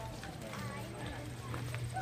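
Footsteps of a crowd walking on a paved walkway, with a few sharp steps standing out, under indistinct chatter from the people around.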